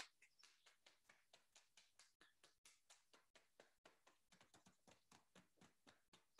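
Near silence, with only very faint, quick taps of fingers patting on the body, about four or five a second.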